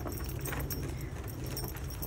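Wind rumbling on the phone's microphone, with scattered light crinkling and rustling clicks.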